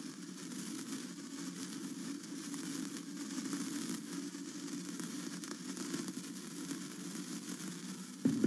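A sparkler fizzing with faint crackles, over a low steady hum.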